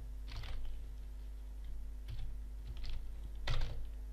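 A computer keyboard being typed on in a few scattered keystrokes, the loudest about three and a half seconds in.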